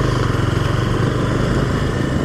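Small motorcycle engine running as the bike is ridden at low street speed, a steady low engine note under a broad hiss.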